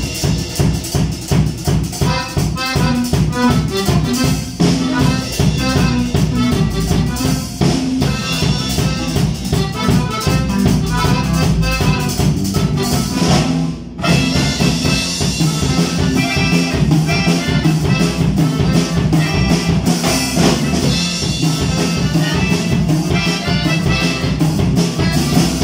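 Live band playing together: drum kit keeping a steady beat, a button accordion carrying the melody, with bass and acoustic guitar underneath. The music breaks off very briefly about two-thirds of the way through and then comes straight back in.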